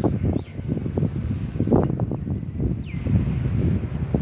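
Wind buffeting the microphone: a low, uneven rumble that comes and goes in gusts.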